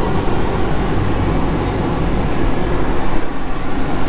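Steady cabin noise inside a KTM ETS electric train carriage standing still at the platform: a low hum under an even hiss.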